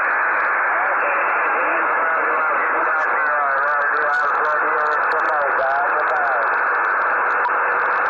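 CB radio receiver speaker giving out a steady rush of band static, with a weak distant station's voice faintly coming through the noise from about three seconds in, too buried to make out.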